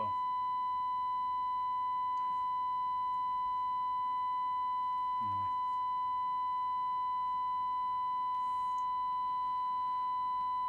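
A steady electronic test tone from bench test equipment, held at one pitch without a break, with fainter overtones above it.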